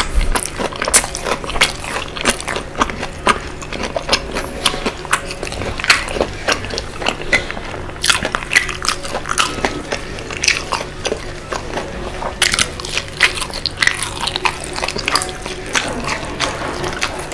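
Close-miked chewing of sauce-coated boneless fried chicken: a dense, irregular run of small clicks and crackles. Near the end comes a bite into a potato fritter (perkedel).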